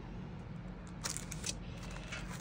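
Clear plastic die packaging handled and slid across a craft mat: a few short crinkly clicks about a second in, over a steady low hum.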